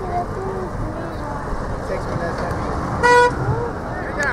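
A single short horn toot about three seconds in, over shouting voices of players and spectators across the field.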